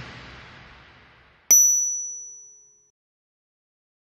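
The last beat of a music track dies away, then about a second and a half in comes a single sharp ding, a promo sound effect whose high ringing tone fades out over about a second.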